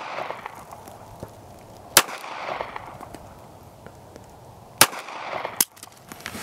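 Ruger LCP .380 pocket pistol fired with a deliberately limp wrist to test for stovepipe jams: a shot about two seconds in, another just before five seconds, and a third report about half a second after that, each with a short echo trailing off.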